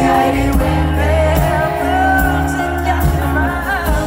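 Live pop song: a male singer singing into a handheld microphone over sustained keyboard chords, heard from the audience.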